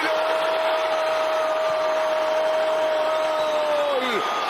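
A football commentator's long drawn-out goal shout ("Goooool"), one held note for about four seconds that drops in pitch as it ends, over a stadium crowd cheering.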